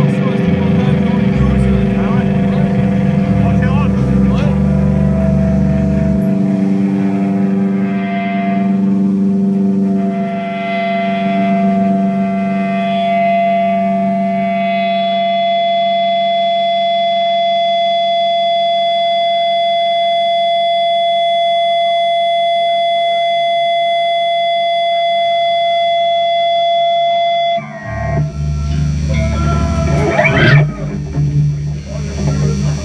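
Black metal band playing live through a loud PA: a sustained heavy chord with bass rings out, thins after about six seconds and settles into a single long held guitar note. Near the end the note cuts off and the full band with drums crashes back in.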